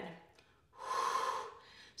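A woman's audible breath, lasting about a second, taken during a strenuous bent-knee glute kickback exercise.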